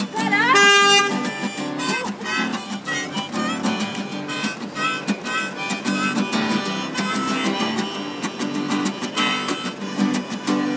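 Acoustic guitar strummed under a harmonica played in a neck rack: an instrumental folk break. The harmonica slides up into a held high note about half a second in, the loudest moment.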